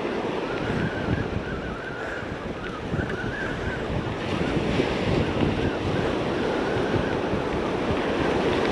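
Surf breaking and washing up on a sandy beach, a steady rushing noise, with wind buffeting the microphone.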